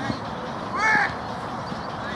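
One short, loud, high-pitched shout from a player on the pitch, about a second in, with no clear word in it.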